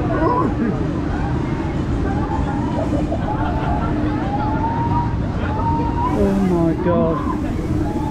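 Fabbri Eclipse/Contact fairground ride in motion: a steady low rumble and hum from the ride, with riders' voices calling out over it.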